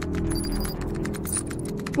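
Rapid typing on a computer keyboard, a quick run of clicks, with a few short high electronic beeps in the first half, over background music.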